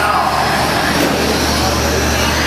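Several radio-controlled electric short-course trucks racing on a dirt track, their small motors making a steady whir.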